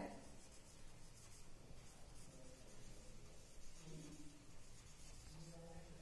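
Faint scratching of a marker pen writing cursive letters on a whiteboard.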